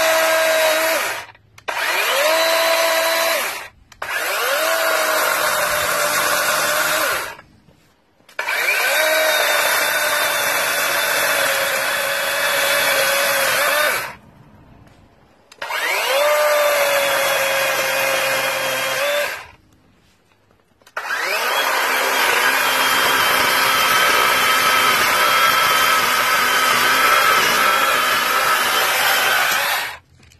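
Battery-powered chainsaw cutting through a Christmas tree trunk in repeated trigger pulls. The motor spins up with a rising whine, runs steadily as the chain cuts, then stops, five times over. The last run is the longest.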